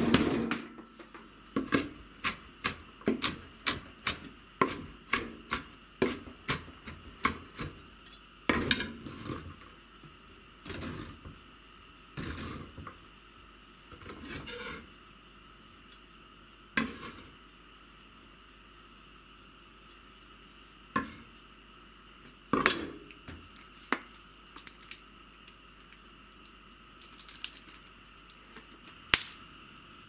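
Kitchen knife chopping garlic cloves on a wooden cutting board, the blade striking the board about twice a second for the first eight seconds. After that come scraping sounds and a few scattered single knocks.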